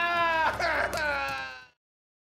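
A cartoon sheep's voiced bleating cry, drawn out in two stretches with falling, wavering pitch, stopping abruptly just before the end.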